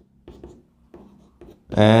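Chalk writing on a blackboard: a few short, faint strokes and taps as letters are written.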